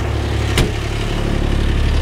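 Kubota RTV-X1100C's three-cylinder diesel engine idling steadily, with the cab door shutting in a single sharp knock about half a second in.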